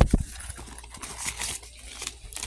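Handling noise from the phone being moved and covered: two sharp knocks right at the start, then soft rustling and scattered light clicks.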